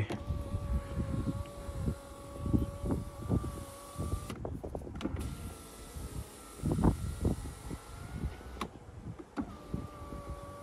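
Mercedes W124 power window motor and regulator driving the rear door glass, a steady whine in three runs with short stops between. The middle run is slightly higher pitched. The regulator has just been serviced and greased.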